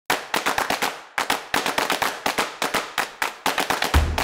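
A rapid, uneven train of sharp clicks, about eight a second, with a brief pause about a second in.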